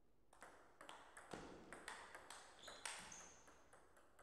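Table tennis rally: a quick, uneven run of about a dozen light, sharp clicks as the celluloid-type ball strikes paddles and the Donic table. The clicks run over about three seconds, with a brief high squeak near the end, and then stop.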